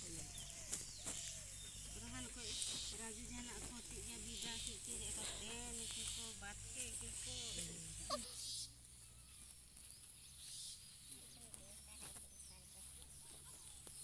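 Indistinct chatter of several people at a distance, with short hissy rustles every second or so. About two-thirds of the way through, the chatter drops away suddenly and it turns quieter, with only faint voices.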